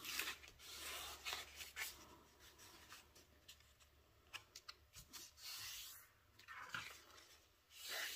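Faint rustling and rubbing of a sheet of patterned scrapbook paper being folded in half and handled on a craft mat, in several short swishes with a few light ticks near the middle.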